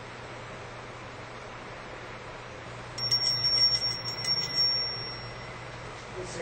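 A small hand bell rung several times in quick succession, starting about halfway through, its high, clear ring lasting about two seconds and then fading out. Before it there is only a steady low room hum and hiss.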